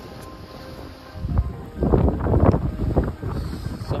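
Wind buffeting the microphone in rough gusts, loudest from about a second and a half in to three seconds in.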